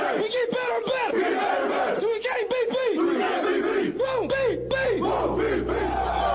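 Football team huddled together, many players shouting and whooping at once in a pregame battle cry. A steady low hum joins about four seconds in.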